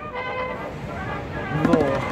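City street ambience with a steady low rumble of traffic, and a person's voice breaking in about one and a half seconds in.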